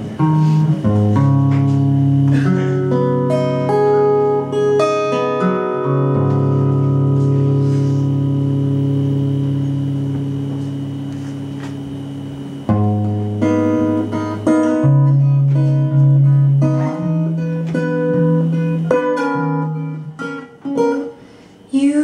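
Solo acoustic guitar intro, picked notes ringing out. A chord is left to ring and fade from about six seconds in until the picking picks up again around thirteen seconds, with a brief lull near the end.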